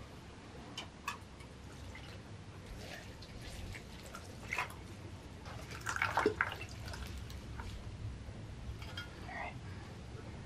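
Water pouring from a plastic watering can onto potted houseplants and into their soil.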